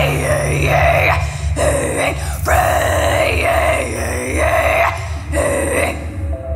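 A woman's wordless singing into a microphone: long drawn-out vowel sounds in about three phrases, broken by short gaps, over a steady low backing track.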